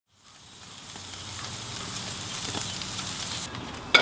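Food sizzling and crackling on a grill. It fades in at the start and cuts off abruptly near the end, followed by a sharp click.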